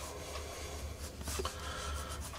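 Blue Prismacolor Col-Erase pencil drawing on Bristol board: the faint, even rubbing of pencil lead across the paper, with a low steady hum underneath.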